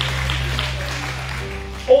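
Soft background music made of sustained low held notes, with a higher note entering about a second and a half in.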